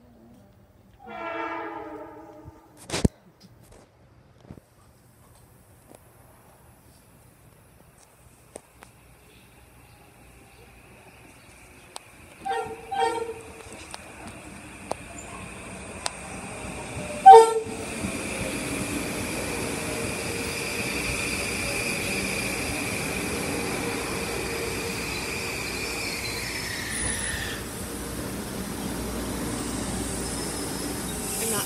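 Metro-North M8 electric multiple-unit train arriving at a station platform and braking to a stop. Its running noise builds from about ten seconds in, with short horn blasts around twelve and seventeen seconds, the last the loudest. A steady high whine follows and drops in pitch near the end as the train comes to a stand.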